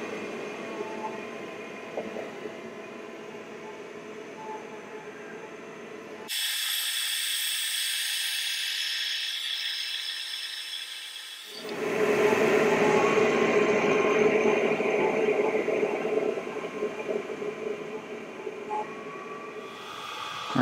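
Diode laser engraver running a cut through 6 mm EVA foam, a steady mechanical whir that changes abruptly in character about six seconds in and again near twelve seconds.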